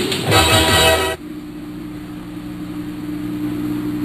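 Cartoon ending-theme music that cuts off abruptly about a second in, leaving a steady low drone of a few held tones.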